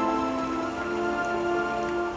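Slow, quiet ambient music of held keyboard chords that shift slowly, with no drums or vocals, over a soft steady noise bed.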